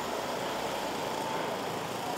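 Steady outdoor traffic noise: an even, unbroken rush with no distinct events.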